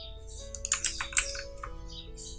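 A quick run of computer keyboard keystrokes, clustered in the first half, over quiet background music with long held notes.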